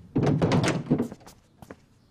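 A heavy wooden coffin lid being pushed open: a close run of knocking and scraping wood for about a second, then a couple of light clicks.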